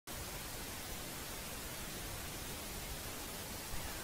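Steady hiss with a low rumble underneath.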